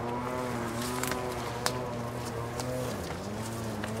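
Distant small gas engine of lawn or hedge-cutting equipment running steadily, its pitch dipping briefly about three seconds in, with a couple of sharp clicks over it.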